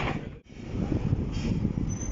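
A steady low rumble of background noise, dropping out suddenly for a moment about half a second in and then returning.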